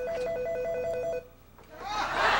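Corded desk telephone ringing with an electronic trill, two pitches alternating rapidly. The ring cuts off a little over a second in.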